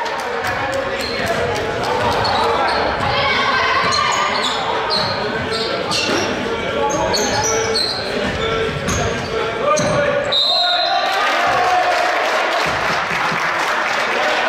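Basketball game sounds in a gym: the ball dribbling, sneakers squeaking on the hardwood floor and players calling out. A referee's whistle blows about ten seconds in, stopping play for a foul that leads to free throws.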